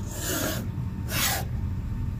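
A fingertip scratching lines through frost on a car's dark painted body: two short scratching strokes, one at the start and one about a second in.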